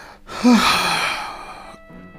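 A man's heavy sigh: a short voiced catch about half a second in, trailing off into a breathy exhale that fades over about a second. A faint held note of background music comes in near the end.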